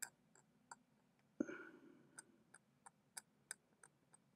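Faint, irregular small ticks of a fine tool scraping at a solder pad on a tablet circuit board, with one soft knock that rings briefly about a second and a half in.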